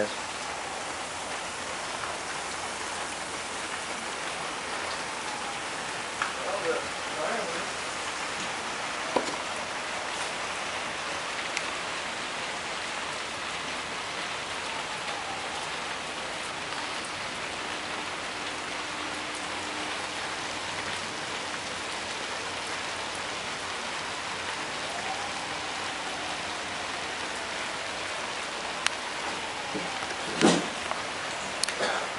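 Steady fizzing hiss of nitric acid reacting with a cut-open lithium polymer (LiPo) pouch cell.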